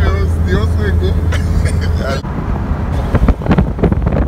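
Car travelling along a road, heard from inside: a steady low engine and road drone with indistinct voices over it. About two seconds in the sound cuts to irregular gusts of wind buffeting the microphone.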